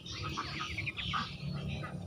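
Bird calls in the background: a quick run of short chirps about a third of the way in, over a low steady hum.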